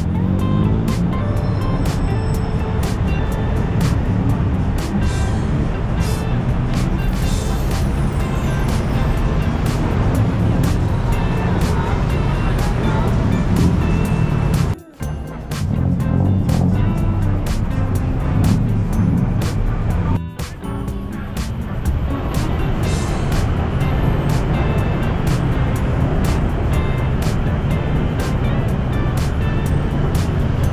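Busy city street ambience: road traffic and cars passing, mixed with music and the voices of people nearby. The sound cuts out briefly twice.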